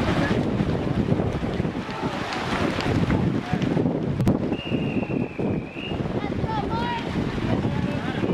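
Busy outdoor swimming-pool din: crowd voices and splashing, with wind rumbling on the microphone. A single long, high whistle blast sounds for about a second from midway, the referee's signal for the next heat to step up onto the starting blocks, and a few shouts follow.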